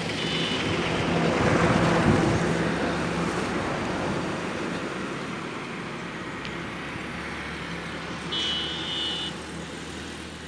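Road traffic on the highway below: a vehicle passes, getting louder and peaking about two seconds in, then a steady, slowly fading traffic noise. A short high tone sounds briefly near the end.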